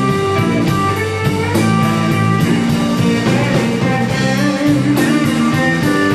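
Live rock band playing: electric guitars and bass guitar over a drum kit, the drums keeping a steady beat.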